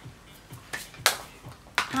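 A few sharp plastic clicks and taps from makeup compacts and brushes being handled, the loudest just after a second in and another near the end.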